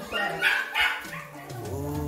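A dog barking three short times in the first second, followed by a steady low drone.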